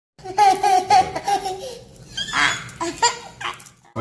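Young boys laughing: a quick run of high "ha-ha" pulses in the first second and a half, then more scattered bursts of laughter.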